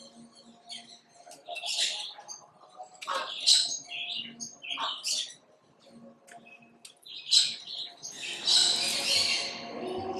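Aviary birds calling in short, scattered chirps and squawks, with a louder, denser burst of mixed sound near the end.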